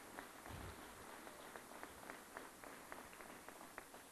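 Faint, scattered clapping from an audience: a sparse run of separate hand claps rather than a full ovation.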